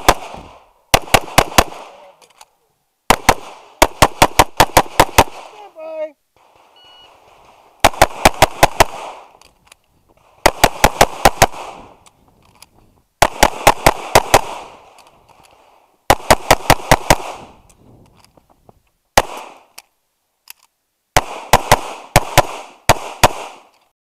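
Semi-automatic pistol fired in fast strings of about four to six shots, each string lasting about a second, with pauses of a second or two between strings. Each shot is sharp and loud with a short echo after it.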